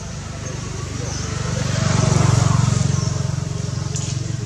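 A motor vehicle's engine running close by out of sight, a low pulsing rumble that swells to its loudest about halfway through and then eases off a little, as if it is passing.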